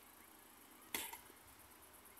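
A single sharp knock about a second in, dying away within a fraction of a second, over a faint steady background hiss.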